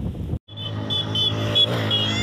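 A steady engine hum starts right after a momentary break about half a second in, as of a motor vehicle idling, with a faint high chirp repeating several times a second over it.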